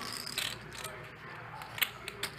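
Poker chips being handled at the table: a few light clicks, with a sharper one near the end.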